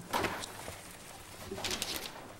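Short creaks and rustling from people moving in their seats, with a brief burst of rustling near the end.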